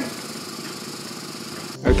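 Steady, even background noise with no distinct events. Near the end it cuts sharply to a louder low hum as a voice begins.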